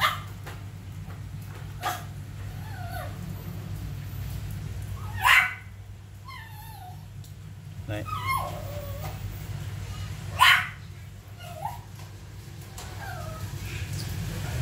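A dog whimpering in short falling whines, with a few sharp yips, the loudest about five and ten seconds in, over a steady low hum.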